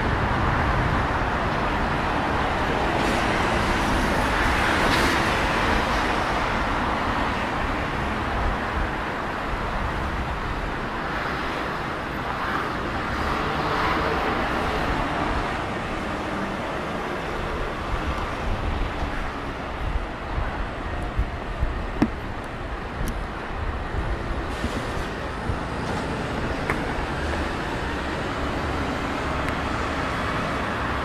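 Busy city road traffic, with cars, lorries and buses passing steadily close by. It swells twice as vehicles go past, about a sixth and about half of the way in. A few short sharp clicks come about two-thirds of the way in.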